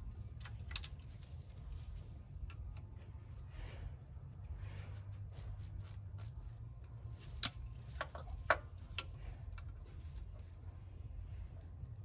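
Scattered small clicks and taps of gloved hands working a coolant hose onto the fitting of a replacement air valve, with a few sharper clicks in the second half, over a steady low background hum.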